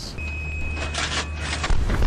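A low steady hum with a thin high tone over it, then near the end a deep rumbling boom of an artillery gun firing.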